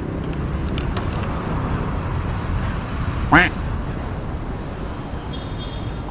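Steady low rumble of road traffic and open-air noise, with one short rising squeak about three seconds in.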